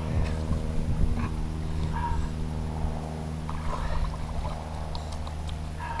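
A motor running steadily in the background: a low, even hum.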